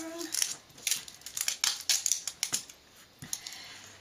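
A clear plastic sheet crinkling and rustling as tape is pressed down along its fold and the tape roll is handled: a string of short, crisp clicks and rustles that thin out near the end.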